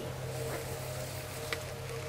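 A steady low hum made of a few held tones, engine-like in character, with one faint click about three quarters of the way through.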